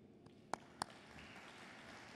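Two short, sharp taps from papers being handled at a lectern with microphones, about half a second apart, followed by faint hall noise.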